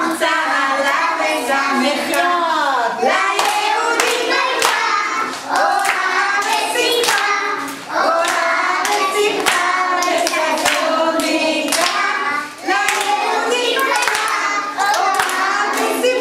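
A woman leading young children in a Hebrew Purim song, with hand clapping along to the singing.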